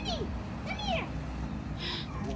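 A woman calling a dog in a high, sing-song voice, two drawn-out calls, the second a short falling one about a second in.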